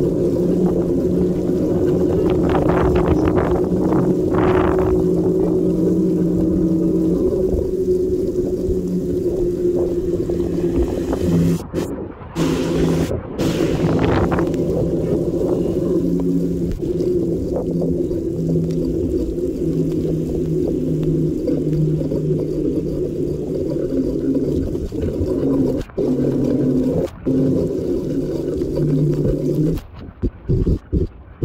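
Wind on the microphone of a camera riding on a moving e-bike: a steady low rumble with a droning hum that shifts slightly in pitch, broken by a few brief dropouts.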